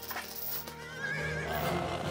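A high, wavering, whinny-like animal cry starting about a second in, over a low steady music drone.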